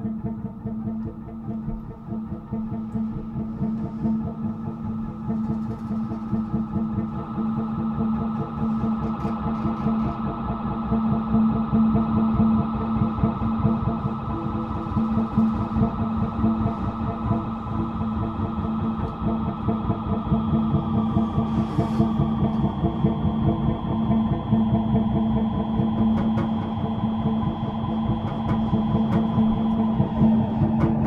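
Experimental improvised ensemble music with guitar: a dense, fast-pulsing drone held on one low note, with sustained higher tones layered above. A high held tone enters about two-thirds of the way through.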